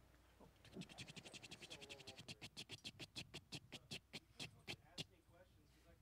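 Spinning prize wheel ticking as its rim pegs pass the pointer: rapid clicks, about ten a second, that slow steadily to a few a second and stop about five seconds in as the wheel comes to rest.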